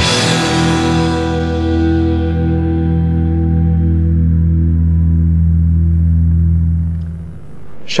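A rock band's final chord ringing out live on electric bass and guitar after the drums stop. The higher overtones die away over the first few seconds while a low bass note holds steady, then it fades out about seven seconds in.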